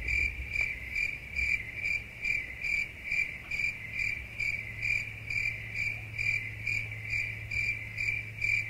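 Cricket chirping sound effect laid over the picture: an even, high chirp repeating a little over twice a second, with a steady low hum under it. It starts and cuts off abruptly, the stock 'crickets' gag for an awkward silence.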